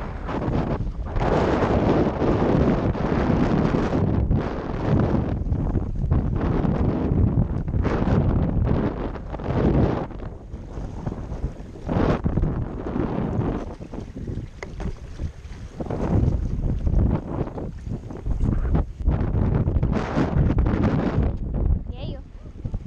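Wind buffeting a GoPro Session's microphone: a loud, uneven rush that surges and eases in gusts, dropping somewhat for a stretch in the middle.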